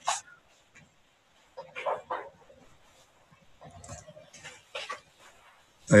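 A dog barking a few short times in the background, in separate bursts about two seconds in and again around four to five seconds.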